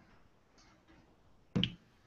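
Near silence, then one short, sharp click about one and a half seconds in.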